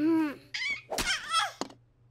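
Short, wordless, high-pitched vocal sounds from a cartoon baby panda, with a sharp thunk about a second in.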